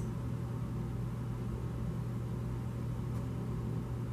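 Steady low hum with a faint even background hiss, unchanging throughout; no distinct events.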